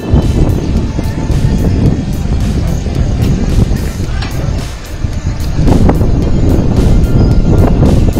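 Wind buffeting a phone's microphone outdoors, a loud, uneven low rumble that eases briefly midway.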